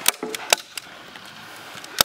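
A few sharp clicks and taps from hand work on wooden battens. The loudest come just after the start and about half a second in, with another at the end.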